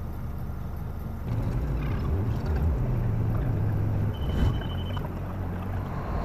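Scania lorry's diesel engine heard from inside the cab: a low rumble that grows louder and more uneven about a second in. A short high beep sounds about four seconds in.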